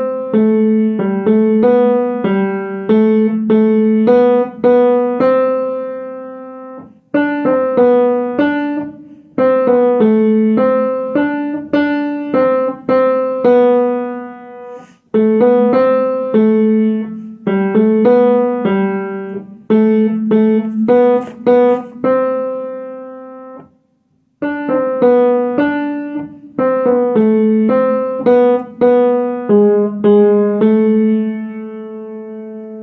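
Piano playing a slow tune with a lower second line, struck notes in phrases that each end on a note left to ring and die away, with short breaks about 7, 15 and 24 seconds in.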